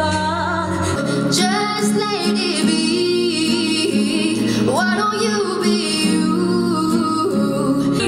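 Music: a woman singing with guitar accompaniment; the deep bass drops out about a second in.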